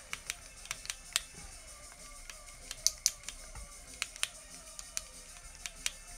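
Ultra Thread 140 wrapped from a bobbin at high tension onto a hook held in a fly-tying vise, with irregular small clicks and ticks as the thread is pulled tight and the tools touch.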